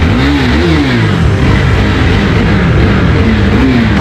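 Sport motorcycle engine revved several times, its pitch rising and falling in repeated swells.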